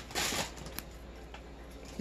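A short rustle of something being handled in the first half second, then quiet with a few faint ticks.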